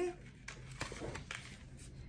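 A few faint taps and rustles of a cardboard paintbrush box being handled.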